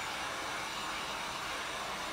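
Handheld electric hot-air dryer blowing steadily as it dries freshly applied paint.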